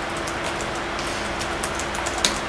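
Steady room noise and hiss from the meeting-room sound system with a constant low electrical hum, broken by a few faint ticks.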